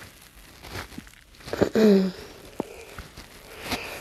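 Soft rustling and crinkling from body and clothing movement as clasped hands circle at the wrists, with one short hummed voice sound about two seconds in.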